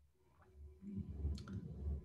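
Faint, uneven low rumble picked up by an open video-call microphone, with a single sharp click a little past halfway.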